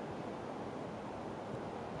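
Quiet woodland ambience: a steady, faint rushing hiss with no bird calls and no distinct events.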